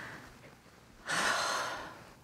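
A woman's single loud, breathy gasp about a second in, fading away over the next half second.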